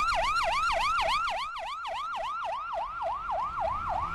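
Ambulance siren in a fast yelp, its pitch sweeping up and down about five times a second.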